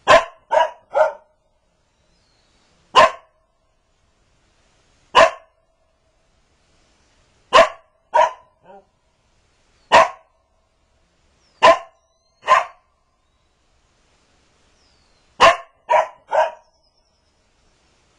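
Border collie barking in short, sharp barks, about fourteen in all, some single and some in quick runs of two or three, with silent gaps of one to three seconds between them.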